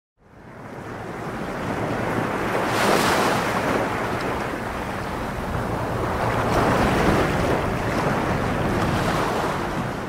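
Ocean surf: a steady wash of waves breaking, fading in from silence over the first second or two and swelling louder about three seconds in and again near seven seconds.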